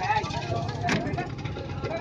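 An engine idling with a steady low throb under people's voices, with one sharp click about a second in.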